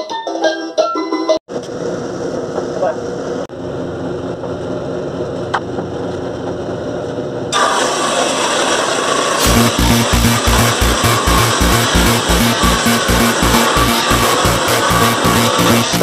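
A few notes on an electronic keyboard, then a homemade table saw running; about seven seconds in its noise jumps up as the blade cuts into a pine board. From about nine seconds electronic dance music with a steady beat plays over the sawing.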